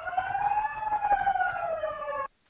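Fire alarm sounding a continuous siren tone that slowly rises and falls in pitch, heard over a video-call connection.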